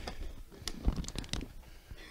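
Half a dozen faint, scattered clicks and taps over low room noise.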